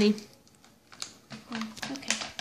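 A scatter of light clicks and taps in the second half, the sound of a phone and sketchbook being handled.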